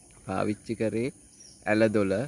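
A man speaking in Sinhala, in two short phrases, over a steady high-pitched chirring of insects.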